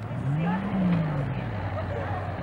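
A car engine revs up and eases back down over about a second, with people talking nearby.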